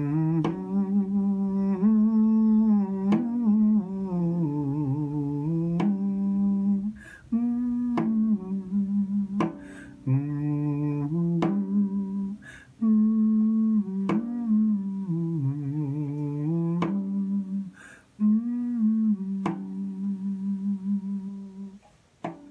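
A man humming a slow, wavering melody in a low voice, in phrases of a few seconds with short breaths between them. Brief sharp clicks come at intervals.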